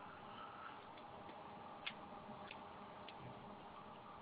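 Near silence with a faint steady hiss and a few soft, isolated clicks, the clearest about two seconds in.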